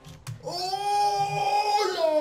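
A man's long, high-pitched 'ohhh!' of astonishment, held steady for over a second, with a second cry starting near the end.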